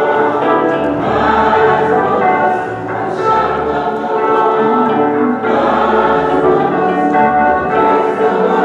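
A choir singing a gospel song, accompanied by a hollow-body electric guitar, many voices together without a break.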